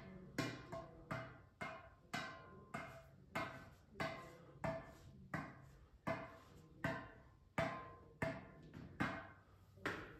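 A tennis ball bounced again and again on the strings of a tennis racket, a short ringing pock on each hit at a steady rhythm of a little under two bounces a second.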